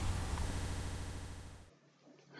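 Faint steady hiss of background noise that fades away over about a second and a half, then near silence.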